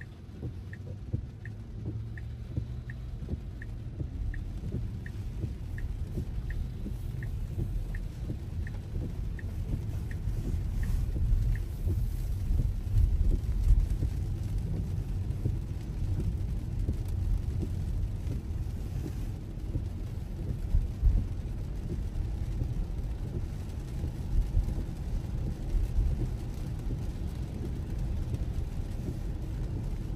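Cabin noise inside a Tesla driving in heavy rain: a steady low rumble of tyres on the wet road and rain on the car, growing louder over the first dozen seconds as the car gathers speed. Over the same stretch the turn signal ticks evenly, about three ticks every two seconds, then stops.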